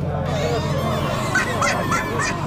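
Birds calling in quick repeated squawks, about three a second from about halfway in, over a low steady drone.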